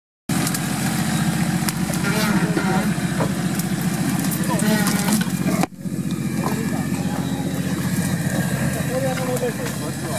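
Nissan Patrol off-roader's engine running steadily as it crawls through mud ruts, with people's voices calling over it. The sound drops out briefly a little before halfway through, then the engine carries on.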